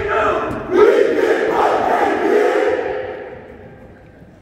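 A group of drumline members shouting a call together, a long held yell that swells about a second in and fades out near the end, before any drumming starts.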